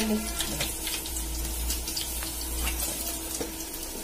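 Fish slices deep-frying in hot oil: a steady sizzle with scattered crackles.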